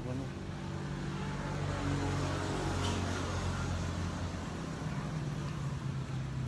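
A motor vehicle engine's low, steady hum, a little louder from about a second in.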